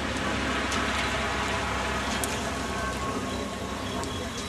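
Steady street noise off wet pavement: an even hiss with a constant low engine hum from traffic beneath it.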